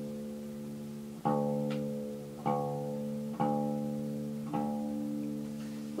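Resonator guitar's low sixth string plucked four times and left to ring between turns of its tuning peg, as it is tuned down from E to D for open G.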